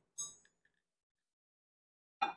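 A single short, light clink of a measuring cup being picked up, right at the start, then near silence.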